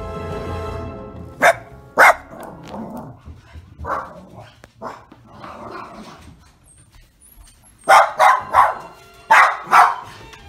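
A small dog barking at the front door as someone comes up to the house. There are two sharp barks about a second and a half in, then a quick run of about five barks near the end.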